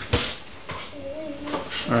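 A toddler's short wordless hum or coo with a wavering pitch, about a second in, preceded by a single sharp knock near the start.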